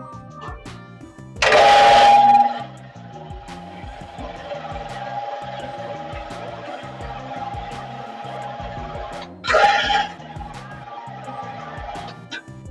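Roll storage carousel's 220-volt three-phase electric drive running, heard as a steady whine over background music. A loud burst of noise about a second and a half in and a second, shorter one near the end stand out.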